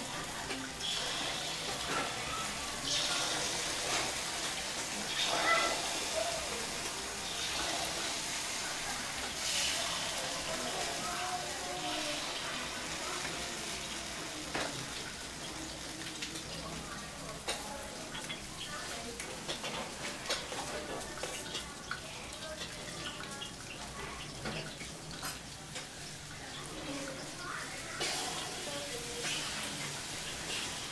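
Rice-flour batter frying in small bánh khọt pans over kerosene stoves: a steady sizzling hiss, with faint voices and occasional light clicks of a ladle and tongs.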